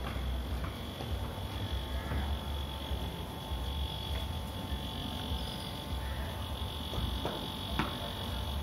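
Steady high-pitched insect buzzing with a fainter lower tone under it, over a pulsing low rumble. A few light clicks come through, the sharpest just before the end.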